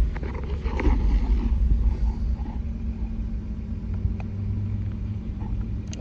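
Jeep engine idling, a steady low hum heard from inside the cabin. During the first second or so there is rustling and a few knocks as the OBD2 sensor is pushed into the port under the dash.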